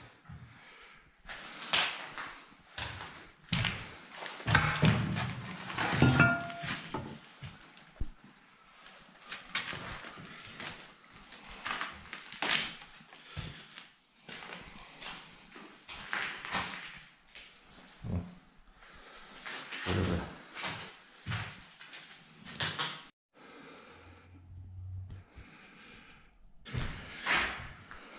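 Irregular footsteps, scuffs and knocks of a person walking through the bare, debris-strewn rooms of a derelict brick building.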